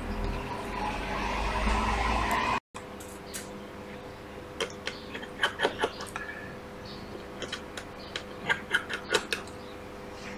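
A small screwdriver clicking and scraping against the metal parts of an opened iPad Pro: a string of light, sharp clicks over several seconds, with a steady low hum underneath. Before the clicks, a low rumble cuts off suddenly about two and a half seconds in.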